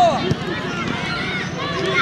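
Sideline voices shouting during a youth football match, with a single knock of a football being kicked about a third of a second in.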